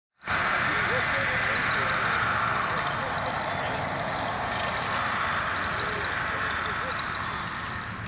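Crowd of many people talking at once: a steady babble of overlapping voices with no single voice standing out.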